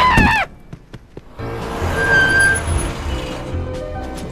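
Cartoon soundtrack: a high-pitched character's voice cries out and cuts off at the start, then after a short lull music plays over a car running.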